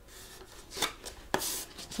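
Hands pressing and smoothing a paper label onto a cardboard box: a few brief paper rubs and rustles, with a light tap about a second and a half in.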